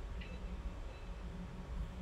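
Steady low rumble and faint hiss of background noise picked up by an open microphone on a video call, with no speech.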